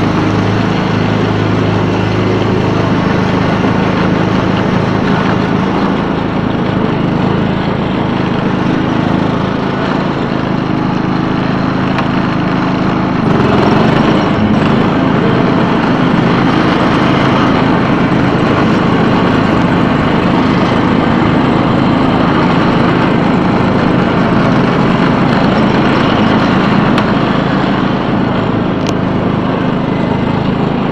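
16 hp Kohler Command engine of a 2003 John Deere LT160 lawn tractor running steadily as the tractor drives along, briefly louder and rougher about halfway through.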